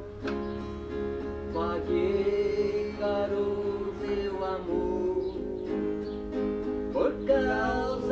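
Acoustic guitar strummed in a slow country (caipira) style, with a man singing long held notes over it.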